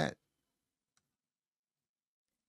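A man's voice ends on a word at the very start, followed by near silence.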